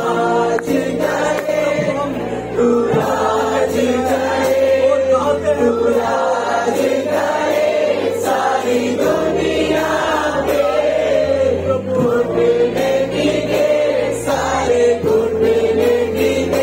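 A group of voices singing a Christian worship song together, with instrumental accompaniment holding sustained bass notes under the melody.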